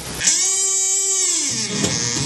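Kazoo buzzing: one note that bends up and back down, then a second note starting near the end.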